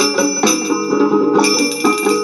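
Assamese Tukari geet folk music: ringing, bell-like percussion strokes on a steady beat, about two a second, over sustained pitched accompaniment.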